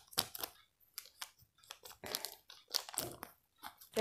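Scissors cutting open a plastic mailer bag, the plastic crinkling in the hands: a run of short, irregular snips and rustles.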